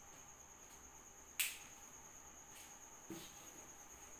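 A sharp click about a second and a half in and a fainter knock near the end, over a faint steady high-pitched tone.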